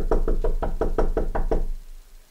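Rapid knocking on a door, about ten quick knocks in under two seconds that die away near the end.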